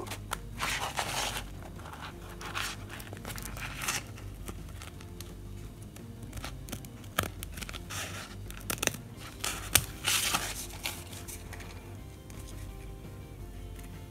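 Scissors snipping through a glitter fabric sheet in a series of crisp cuts, some in quick runs, with short pauses between. A steady low hum from a tumble dryer runs underneath.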